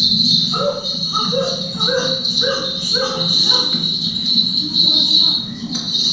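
Documentary soundtrack heard through the room's speakers: a steady high insect drone of crickets or cicadas, joined for the first few seconds by a run of short repeated calls about twice a second.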